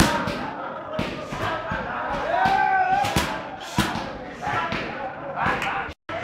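Sharp slaps and thuds of muay thai strikes, knees and kicks landing, coming at irregular intervals over a background of voices. A voice calls out in one drawn-out cry about two and a half seconds in.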